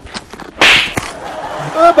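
A single short, loud swish lasting about half a second, a little over half a second in.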